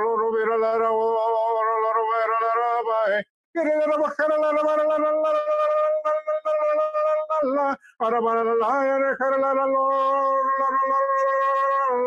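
A man singing long held wordless notes in three phrases of a few seconds each, with short breaths between them; each note is held on a fairly steady pitch, the middle one higher.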